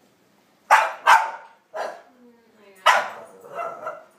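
A Boston Terrier barking at a dog on the television: a handful of sharp, loud barks, the first two close together about a second in, then another about two seconds later and a fainter sound near the end.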